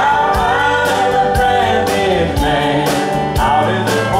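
Live country band playing: drums keeping a steady beat, electric guitar, bass and pedal steel guitar, with a man and a woman singing together.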